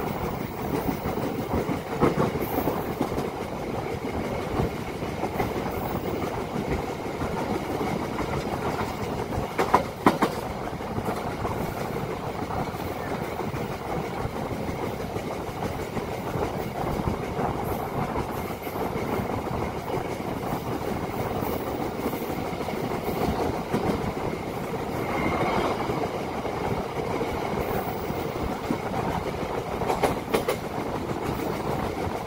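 Passenger train running at speed: the steady rumble and rattle of steel wheels on the rails, with occasional clatter over the track. There is a sharper, louder clack about ten seconds in.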